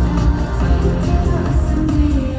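K-pop song with a strong bass beat played loud over an arena sound system during a live performance, recorded on a phone.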